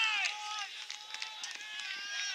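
Footballers shouting and cheering on the field. One long, loud, high-pitched shout comes at the start and trails off into scattered shorter calls.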